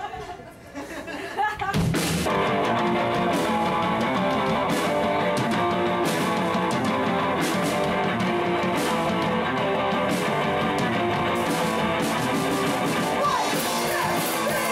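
Live rock band of electric guitar and drum kit kicking into a song about two seconds in, after a short quieter lead-in, then playing loudly and steadily.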